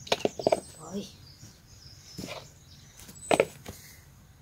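A few short knocks and rustles as a toddler handles bits of bark in a bowl, with brief soft voice sounds between them.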